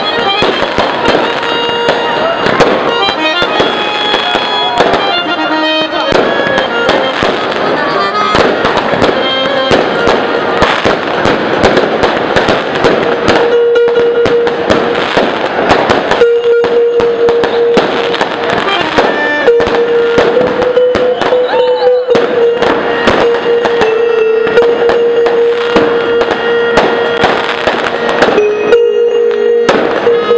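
Aerial fireworks bursting and crackling in rapid, overlapping volleys, with music playing underneath and a long held note through the second half.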